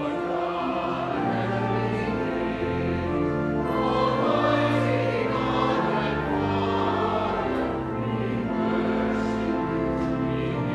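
Mixed church choir and congregation singing a hymn in a reverberant church, with pipe organ accompaniment holding low bass notes under the voices.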